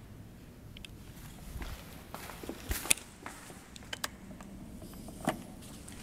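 Footsteps on a hard floor: a few sharp taps roughly a second apart over quiet room tone.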